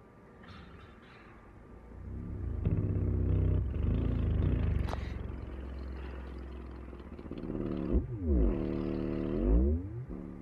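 Prototype Sundown Audio LCS 10-inch subwoofer (poly cone, rubber surround, double-stacked motor) playing a low bass tone in free air, its cone moving through large excursion. The tone comes in about two seconds in and is loud and buzzy. Near the end its pitch sweeps down and back up.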